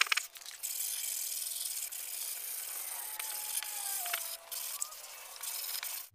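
Hand block sanding of cured body filler with 80-grit sandpaper on a short rigid sanding block: a steady scratchy rubbing hiss of paper over the filler.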